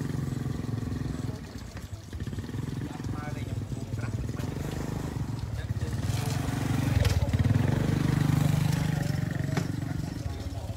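A steady low motor hum that grows louder about seven seconds in and then eases, with faint talk from a group of people.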